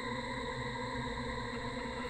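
Ambient background music between narrated passages: a steady, sustained drone of held tones with no beat.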